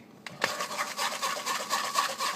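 A utensil scraping puréed blueberries through a fine wire-mesh sieve, rasping continuously against the mesh from about half a second in.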